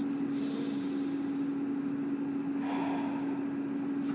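A steady low electrical-sounding hum at one pitch, with a soft breath from the speaker about three seconds in.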